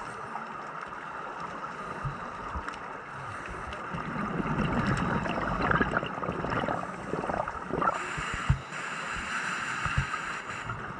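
Underwater scuba sound heard through a camera housing: a steady hiss, then from about four seconds a few seconds of gurgling exhaled bubbles from a diver's regulator. A single sharp knock comes near the end.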